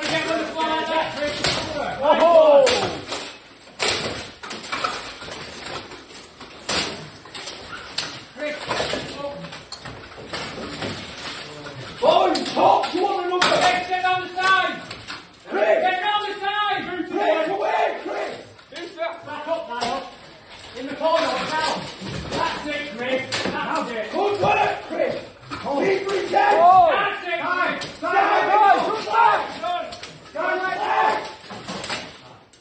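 Steel plate armour clanking and knocking as two armoured fighters grapple and strike each other, with many sharp impacts scattered through, amid shouting voices.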